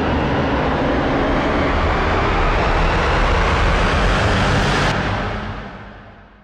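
Loud rushing rumble that builds and holds, then fades away over the last second.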